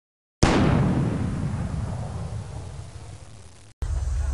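Boom sound effect: a single sudden loud hit about half a second in that dies away slowly over about three seconds, then cuts off abruptly just before the end.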